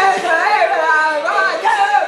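A voice singing high and loud along to a pop-rock song, its pitch sliding up and down, with the song's recording underneath.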